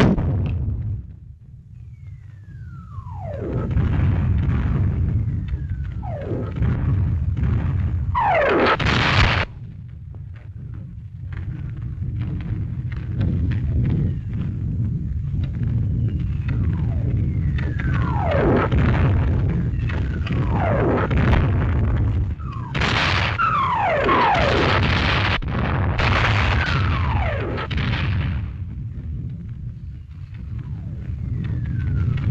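Artillery barrage: incoming shells whistling down in falling pitch, about ten times, each followed by a bursting explosion, over a continuous low rumble of distant guns.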